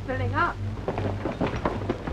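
A brief two-syllable vocal sound, then a quick, irregular patter of knocks and clicks over a steady low hum.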